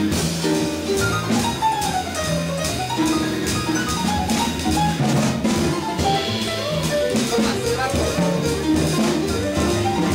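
Live jazz from a quartet's acoustic piano, drum kit and double bass: the piano plays quick running lines over low bass notes while the drummer keeps time with frequent cymbal strokes.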